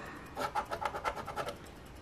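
A round scratcher scraping the latex coating off a scratch-off lottery ticket in quick back-and-forth strokes, several a second, fading out after about a second and a half.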